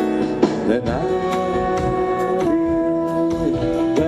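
Live band music: grand piano and hand percussion under a long melody line whose held notes slide from one pitch to the next, with steady percussion strokes.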